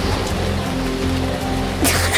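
Steady heavy rain of a storm, with low sustained music underneath and one held note about halfway through.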